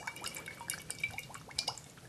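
Olive oil pouring from a glass bottle onto salad in a bowl: a quiet run of small, irregular drips and ticks.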